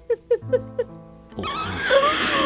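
Sustained dramatic background music under short quavering sobs, which break into louder wailing crying about one and a half seconds in.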